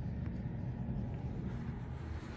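Steady low background rumble with no distinct event, apart from a faint click about a quarter second in.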